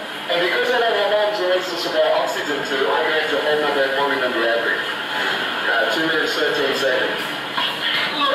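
Speech from a film's soundtrack played over loudspeakers in a hall, heard with the room's echo.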